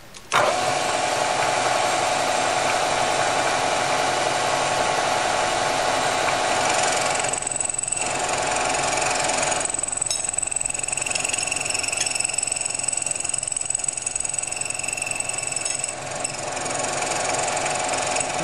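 Vertical milling machine switched on, its spindle running steadily. From about the middle, a higher whine joins as the cutter takes a trial skim across the crown of a hypereutectic aluminium piston to check its alignment, easing off shortly before the end.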